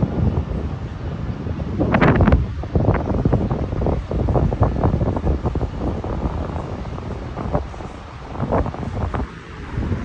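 Wind buffeting the microphone of a phone filming outdoors, an uneven low rumble that swells in gusts and eases off near the end.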